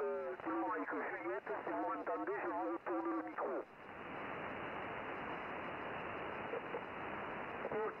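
A voice on single-sideband from a Yaesu HF transceiver's speaker, thin and cut off in the treble, ending a little over three seconds in. Then a steady hiss of 40-metre band noise from the receiver until a voice comes back near the end.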